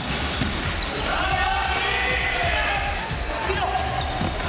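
Futsal ball being kicked and bouncing on an indoor court floor, irregular dull thuds, with players calling out to each other.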